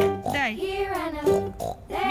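Peppa Pig toy train's built-in sound playing a recorded cartoon pig voice, with pitch gliding up and down, then breaking off shortly before the end.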